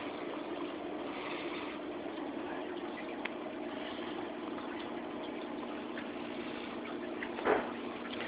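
Steady hum and water wash of a reef aquarium's circulation pump running, with one small tick about three seconds in.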